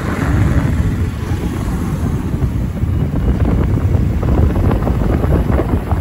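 Wind buffeting the microphone on a moving motorcycle, a steady low rumble with motorcycle engine and road noise underneath.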